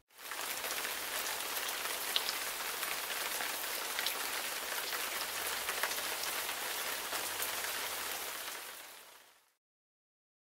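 Steady rain falling, a dense patter of drops, fading out near the end.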